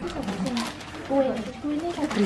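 Voices talking indistinctly, with no clear words.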